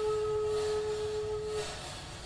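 Flute music: one long held note that fades away about a second and a half in.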